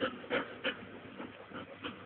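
Old English Sheepdog panting in short breaths, about three a second.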